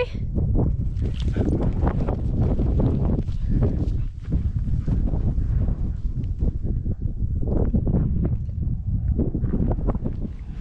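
Wind buffeting the microphone in a steady low rumble, with footsteps on a gravel path under it and a short laugh at the very start.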